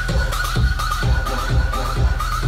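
Loud electronic dance music from a live DJ set over a PA system: a steady four-on-the-floor kick drum at about two beats a second under a high, repeating synth lead.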